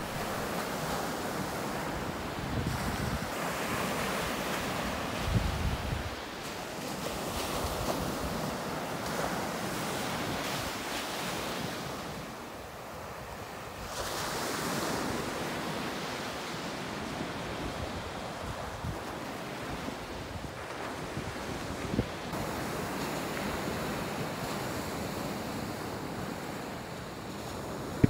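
Baltic Sea surf breaking and washing up a sandy beach, a steady rush of waves, with occasional gusts of wind on the microphone.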